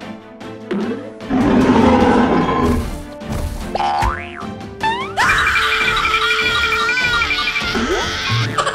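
Cartoon soundtrack: background music with comic sound effects. Quick upward pitch glides come about four and five seconds in, followed by a long, wavering high tone that lasts until near the end.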